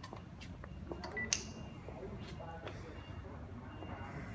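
Low, steady room hum with a few faint clicks and taps, one sharper click about a second and a half in.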